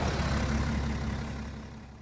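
BMW X5 30d's three-litre straight-six diesel engine idling, with a broad hiss over it, fading steadily toward the end.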